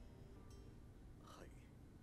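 Near silence, with a brief faint voice about a second and a half in.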